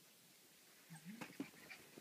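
A Goldendoodle puppy gives a short, low whimper about a second in, followed by a few soft clicks.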